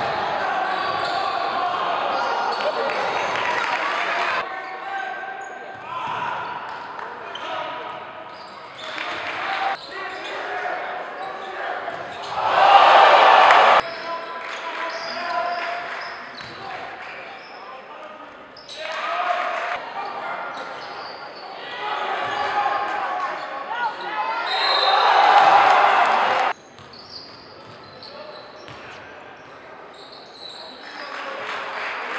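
Live gym sound from high school basketball games: a basketball bouncing on a hardwood court under the chatter of spectators and players in a large echoing hall. Two loud bursts of crowd voices come about halfway through and again near the end, and the sound changes abruptly at cuts between clips.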